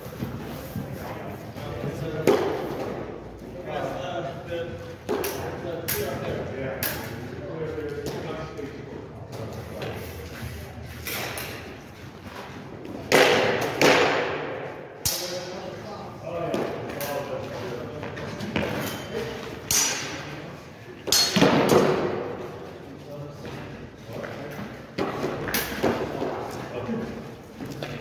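Smallsword sparring: footsteps and stamps on concrete and light clicks of blade contact, with voices now and then.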